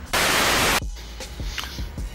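A loud burst of white-noise static, lasting under a second and cutting off abruptly, from a TV-static transition effect between clips; afterwards only a low background hum.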